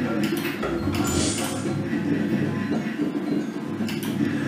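Slot machine game music and sound effects playing through a free-spin round, with sustained low tones throughout and a brief hiss about a second in.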